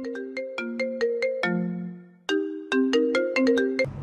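iPhone ringtone for an incoming call: a short melody of quick notes, played through, breaking off about two seconds in, then starting again.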